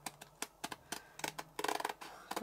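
Scissors snipping through a diamond painting canvas, a run of short, quiet clicks as the blades close.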